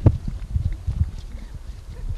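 Wind buffeting an outdoor camcorder microphone: a low, irregular rumble with repeated thumps, and one sharp knock just after the start.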